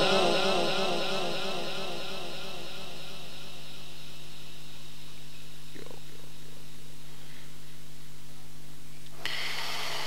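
A reciter's amplified voice dies away through a public-address loudspeaker in the first two seconds. Then the sound system's steady electrical hum and hiss carries on through a pause in the Quran recitation. The hiss rises slightly near the end.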